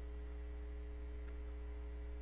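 Steady electrical mains hum, a low drone with a ladder of even overtones over a faint hiss.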